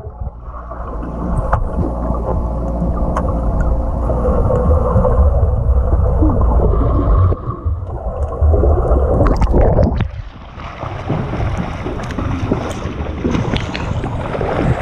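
Swimming-pool water heard by a camera held under the surface: a loud, muffled rumble of moving water with scattered clicks and bubbles. About ten seconds in the camera comes up and the sound opens out into brighter splashing of swimmers kicking at the surface.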